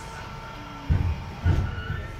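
Two low thumps about half a second apart, over a faint steady hum.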